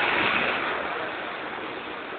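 A bus passing close alongside, its engine and road noise swelling loudest right at the start and easing off, over the steady rush of travelling in an open vehicle.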